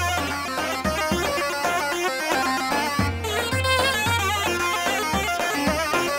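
Instrumental Middle Eastern folk dance music: an ornamented melody with wavering notes over a recurring bass.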